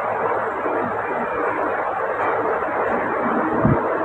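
A steady rushing noise with no voice in it, even in level throughout.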